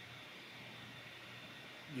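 Faint steady background hiss with a low hum: room tone in a pause between speakers, with a man's voice starting at the very end.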